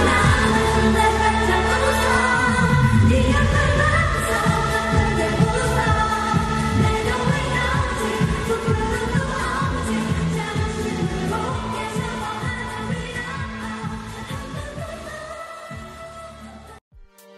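Pop song with singing over a bass line and a steady beat, with a falling glide about three seconds in; the music gradually fades toward the end.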